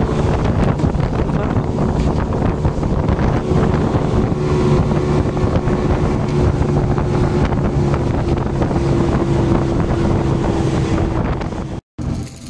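Evinrude 150 hp outboard motor running at speed with a steady drone, over the rush of the boat's wake and wind buffeting the microphone. It cuts off abruptly near the end.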